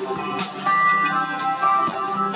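Live concert music between sung lines: steel-string acoustic guitar picking with band backing, and a held high note that comes in under a second in.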